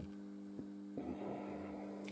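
Steady low electrical hum, with one faint click just over half a second in.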